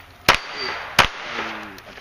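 Two pistol shots about three-quarters of a second apart, each a sharp crack with a short echo.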